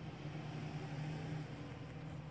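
A steady low hum, a little louder in the middle, like a distant motor or appliance running.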